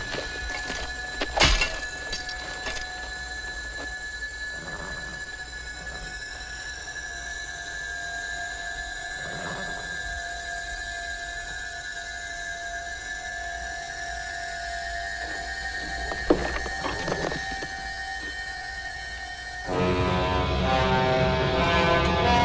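Horror film soundtrack: eerie high-pitched tones held for a long time, with a few soft swells passing through, then the music grows louder and fuller about twenty seconds in.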